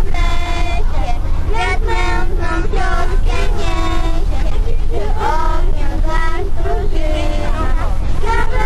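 Young girls singing together into a microphone, holding some notes, over the steady low rumble of a moving coach bus.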